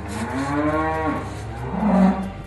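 Cattle mooing: one long call that rises and then falls in pitch, followed near the end by a second, louder and lower moo.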